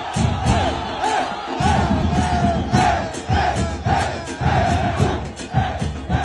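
A stadium crowd of football supporters chanting and singing together, with low drum beats repeating in a steady rhythm underneath.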